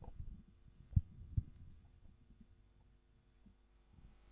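Handling noise from a handheld microphone being passed and positioned: low thumps and rumble, with two louder thumps about a second in, over a faint steady hum.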